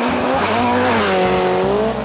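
Rally car engine at high revs on a gravel stage, its note climbing and then dropping away, over a rushing noise.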